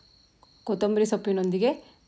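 A woman speaking for about a second, starting just under a second in, with a faint steady high-pitched tone running beneath.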